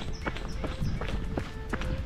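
A trail runner's footsteps on a dirt track, at a steady running rhythm, under quiet background music.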